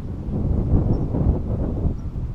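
Strong wind buffeting the microphone: a loud, uneven low rumble that rises and falls with the gusts.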